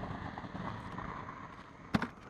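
Steady outdoor noise of wind and road traffic from the roadside bridge, fading slightly, with one sharp knock just before the end.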